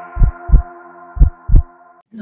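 Intro sting music: low double thumps like a heartbeat, two pairs about a second apart, over a sustained synth chord that fades away.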